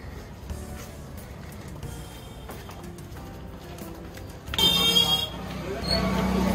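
Low street background, then a single short, loud vehicle horn honk about four and a half seconds in.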